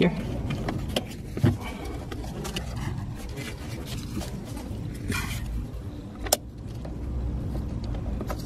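Plastic wiring connector and ABS sensor cable being handled and pressed into place in a car's wheel well: soft rustling and small clicks, with one sharp click about six seconds in, over a steady low rumble.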